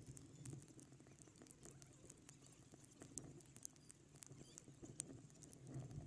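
Raindrops tapping irregularly on the camera, faint, sharp little ticks over a low muffled hum.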